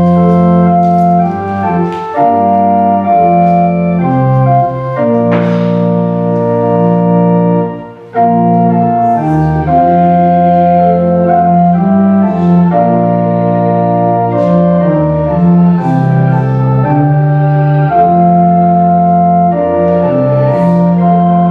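Organ playing the opening hymn in sustained chords that change every second or so, with a short phrase break about eight seconds in.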